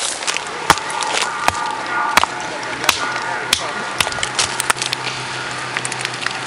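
Sharp knocks of a stone striking coyol palm nuts set on a rock to crack the shells, coming about every two-thirds of a second, with faint voices in the background.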